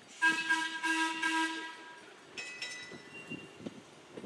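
Air horn on a departing electric railway train sounding one steady blast of about a second and a half. Two brief higher squeaks follow about a second later over the low rumble of the moving cars.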